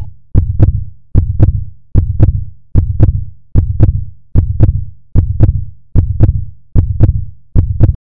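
Heartbeat sound effect: a steady lub-dub of two low thumps, repeating about every 0.8 seconds, ten beats in all.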